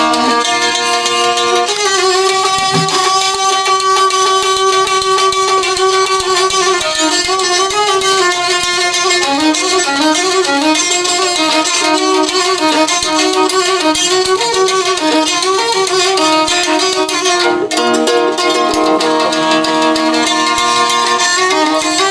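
Violin (biola) playing an instrumental passage, long held notes at first and then a quicker melody stepping up and down, with a plucked gambo lute beneath it.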